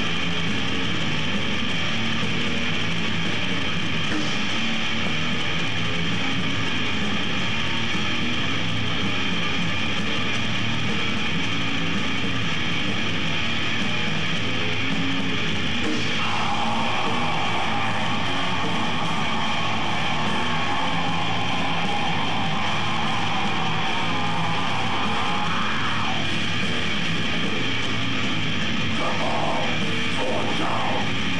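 Death metal band playing live: heavy distorted electric guitars over bass and drums. About halfway in, a long growled vocal comes in over the band for about ten seconds.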